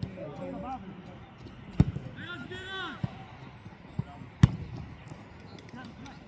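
A football is kicked hard twice, two sharp thuds about two and a half seconds apart. A player shouts between them, with other voices around the pitch.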